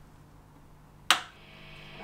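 A single sharp switch click a little over a second in as the Marshall DSL20 valve amp head is switched on, followed by a faint hiss that slowly rises as the amp comes up. A low steady mains hum runs underneath.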